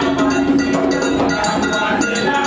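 Ceremonial drum-and-bell music: a metal percussion instrument strikes a fast, steady beat while voices sing held notes.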